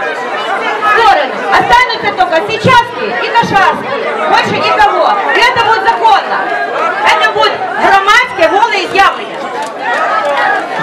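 Overlapping voices: a woman speaking into a microphone amid chatter from the crowd around her.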